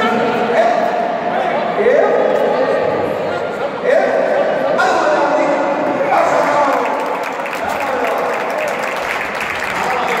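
A man's voice through a PA in a large hall, calling out in long drawn-out shouts that fall in pitch, with occasional dull thuds of the stone weights dropped onto rubber tyre pads.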